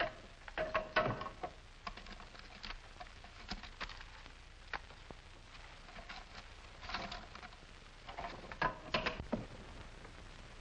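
A wall safe's combination dial being turned by hand: irregular runs of sharp clicks and ticks, busiest about a second in, around seven seconds and near nine seconds, as the safe is cracked by feel and ear without the combination.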